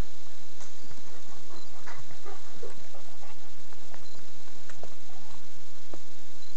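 Footsteps on a forest trail: irregular soft crunches and rustles of someone walking while holding the camera.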